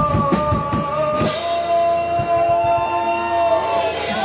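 Live rock band with acoustic guitar, bass, drums and a male singer at the microphone. Regular drum strokes run for about the first second, then the beat mostly drops away and held notes carry on.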